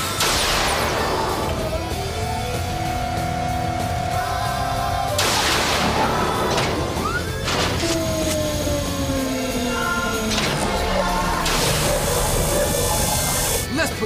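Music from a TV megazord assembly sequence, laid with synthesized effects: several rushing whooshes, the first at the very start and others about five and eleven seconds in, and a long falling tone about halfway through.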